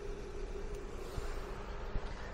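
Outdoor background noise: a low rumble with a faint steady hum, and no distinct sound event.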